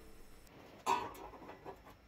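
A single short clatter about a second in, from a thin mild-steel sheet and marking-out tools being handled on a wooden workbench, with a few faint ticks after it.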